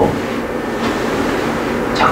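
Steady room noise: an even hiss and hum with no distinct events.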